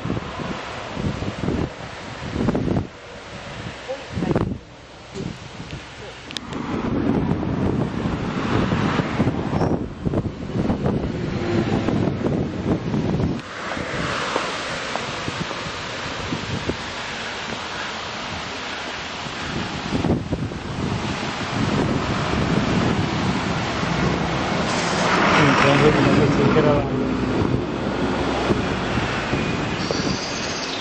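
Wind buffeting a handheld camera's microphone, a rough noise that gusts up and down, with indistinct voices a little before the end.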